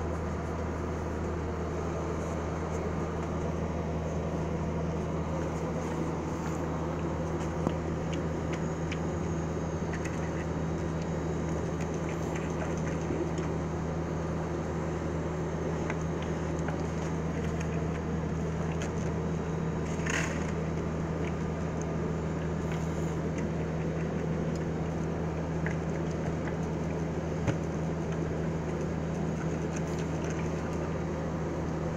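A steady low electrical hum, with faint clicks and scrapes as a steam iron is slid over a cotton T-shirt, and one short hiss about twenty seconds in.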